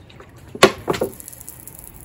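A two-liter plastic bottle with a shower-nozzle attachment squeezed to spray water, with two sharp crinkles of the plastic, the first a little after half a second in and the second about a second in.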